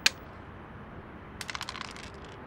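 Dice thrown onto a tavla (backgammon) board: one sharp click at the start, then a quick run of clattering clicks about one and a half seconds in as the dice tumble and come to rest, landing double twos.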